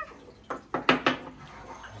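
Carved wooden figurines set down on a wooden ledge: about four light, sharp knocks in quick succession around the middle.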